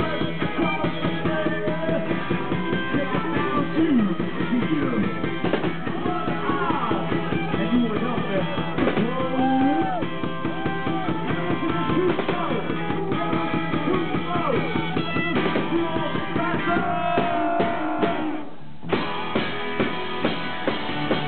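Live rock and roll band playing: electric guitar over a steady drum-kit beat, with a short break in the playing about a second and a half before the end.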